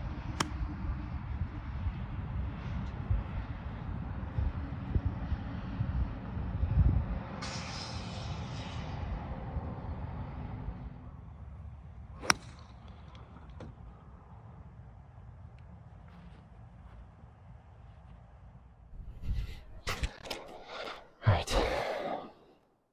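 Two golf shots: a golf club striking the ball with a sharp click about half a second in and again about 12 s in, the first over a steady low rumble of wind on the microphone. A few louder, irregular noises come near the end.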